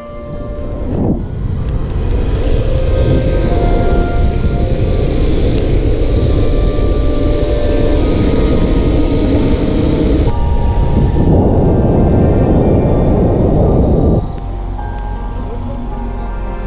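Loud, steady rolling and wind noise from electric skateboards riding over asphalt, with background music underneath. The noise drops away near the end, leaving mostly the music.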